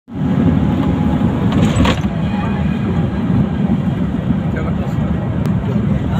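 Steady low rumble of a moving vehicle's engine and tyres on an unpaved dirt road, heard from on board.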